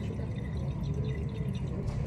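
Titrant dripping from a glass burette into a conical flask during a titration, over a steady low background noise.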